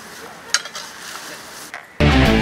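A digging tool striking the earth at the base of a banana plant: one sharp chop about halfway through and a few lighter scrapes, over a low steady hiss.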